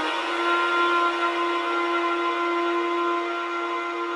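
Progressive house DJ mix at a breakdown: a held synth pad chord with no drums or bass, getting slightly quieter toward the end.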